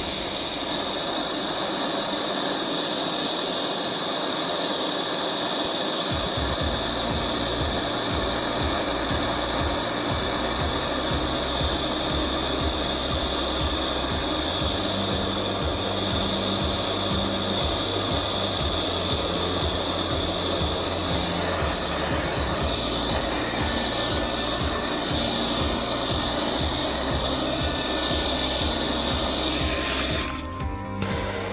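Butane blowtorch flame running with a steady hiss against treated fabric, over background music whose low bass notes come in about six seconds in.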